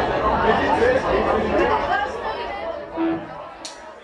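Indistinct crowd chatter from the audience between songs, thinning out over the last couple of seconds. About three seconds in there is a short single note, followed by a few sharp clicks.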